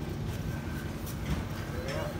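Outdoor background noise: a low, steady rumble with faint distant voices and a light click or two near the end.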